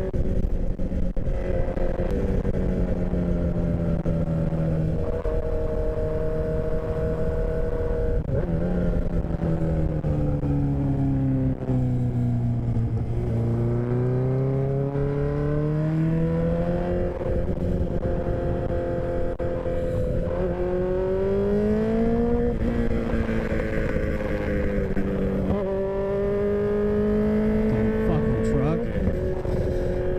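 Suzuki sportbike engine running at cruising speed, its note rising and falling slowly with the throttle and stepping abruptly a few times, heard over wind buffeting on the helmet camera's microphone.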